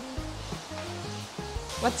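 Soft background music over a steady hiss of water. Near the end the hiss grows brighter as a garden-hose spray nozzle sprays water onto a car's side.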